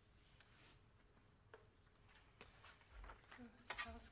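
Near silence: hall room tone with a few faint clicks and rustles, and a brief louder sound near the end.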